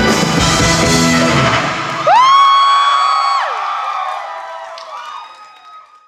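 A live rock band (electric guitars, bass and drums) plays the final bars of a song and stops about two seconds in. A loud high whoop then rises, holds for over a second and drops away, and the sound fades out with a faint lingering ringing tone.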